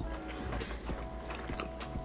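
Soft background music with steady held notes, and a few faint clicks.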